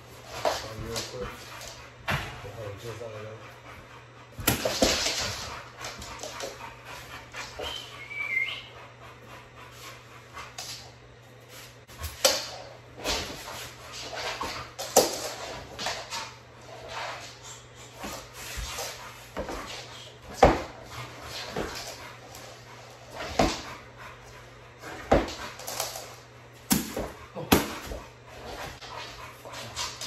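American Bully barking in sharp single barks spaced irregularly a second or more apart, with a brief high whine, while it is being worked up against a bite sleeve in protection training.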